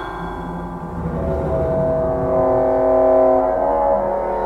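Chamber ensemble holding long, steady low notes on bowed strings, a double bass among them, growing louder about a second and a half in.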